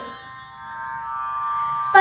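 Background music drone of steady, sustained tones, growing louder through the second half.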